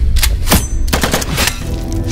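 Gunshot sound effects from a film title sequence, a string of sharp shots about two a second over a deep steady bass.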